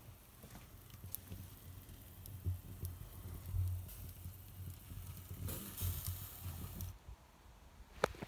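Faint hiss and crackle from a charcoal grill with meat on the grate, over a low rumble on the microphone. Near the end a louder burst of hiss lasts about a second and a half, then cuts off suddenly.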